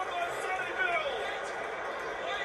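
A male TV commentator's voice from a rugby league match broadcast, heard over steady background noise.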